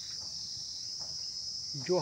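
Steady, high-pitched chorus of insects, crickets' shrill chirring, unbroken throughout.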